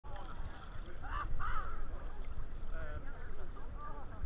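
Choppy sea water lapping and sloshing around a camera held at the surface, with a steady low rumble, and faint voices of nearby swimmers, loudest about a second in.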